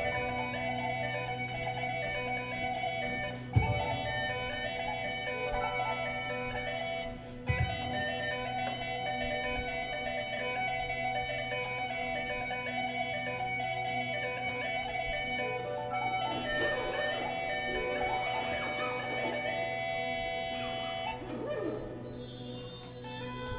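A small acoustic band playing live: acoustic guitars, keyboard and a wind instrument, with long held notes over a steady low drone. There are two sharp accents early on, and the last few seconds bring busier, sliding notes.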